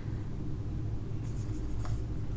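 Marker pen writing on a whiteboard, with faint scratchy strokes and a small tap in the second half, over a steady low hum.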